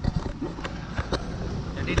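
Handling noise from a hand-held camera being turned around: a low rumble of wind on the microphone with a few sharp knocks and clicks, then a man begins speaking near the end.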